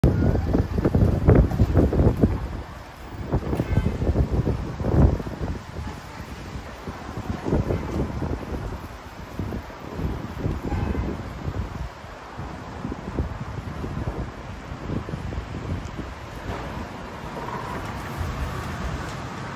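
Wind buffeting a phone microphone in irregular gusts, loudest in the first five seconds, over a steady background of road traffic.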